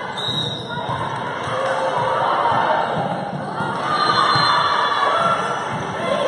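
Indoor volleyball being served and played: the ball struck with dull thumps, under players' calls and spectators' voices in a large gym.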